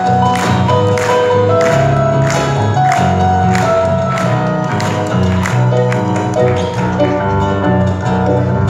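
A live Paraguayan folk band plays an instrumental passage on Paraguayan harp, electric bass and keyboards. A steady beat of hand-claps and drum strokes comes about twice a second.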